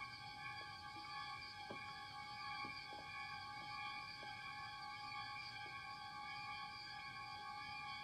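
Faint film score: a cluster of high tones held steady as a sustained, eerie chord.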